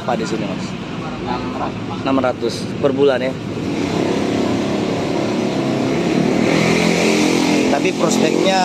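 A road vehicle's engine running close by. It grows louder about halfway through and holds steady to the end.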